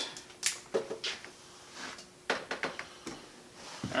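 Scattered light clicks and knocks of a plastic siphon hose and jug being handled at a kitchen sink.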